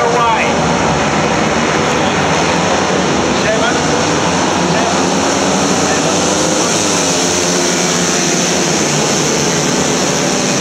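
A grid of small-capacity racing motorcycles (80 to 200 cc) revving and accelerating away together from a standing start. Their many overlapping engine notes climb in pitch as the pack pulls away.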